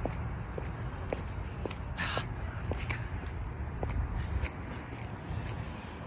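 Footsteps of a person walking along a wet paved path, about two steps a second, over a low steady rumble.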